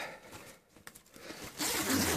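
Metal zip on a parka jacket being pulled down, a short zipping run near the end.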